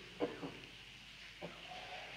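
A quiet pause over low room tone, with two short, faint pitched calls: one about a quarter second in and a weaker one about a second and a half in.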